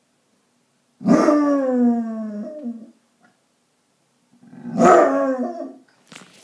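Basset hound howling twice, two long howls each sagging slightly in pitch, the second starting about a second and a half after the first ends. It is separation howling, the dog left alone while his owner is out.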